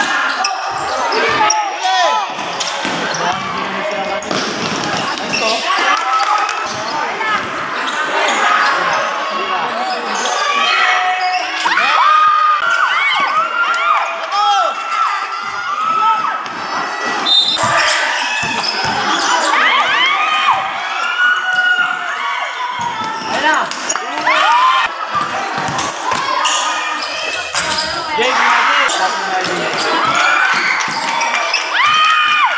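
Sounds of a basketball game in progress: a basketball bouncing on the court as it is dribbled, with young players and courtside spectators shouting.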